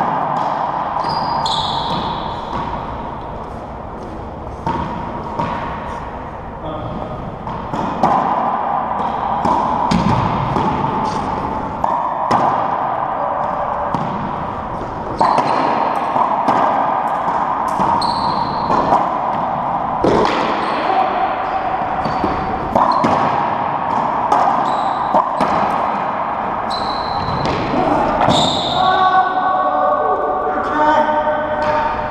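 Racquetball rally in an enclosed court: the hard rubber ball smacking off racquets, walls and the hardwood floor again and again, each hit echoing. Brief sneaker squeaks on the floor at a few moments.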